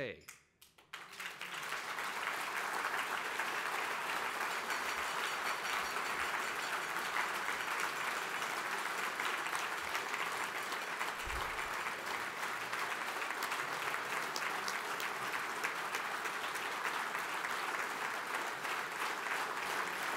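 Audience applauding: clapping swells about a second in and goes on at a steady level.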